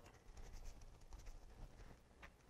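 Faint rubbing and scuffing of hands working a rubber RC tire on its wheel, rolling the tire to seat its bead.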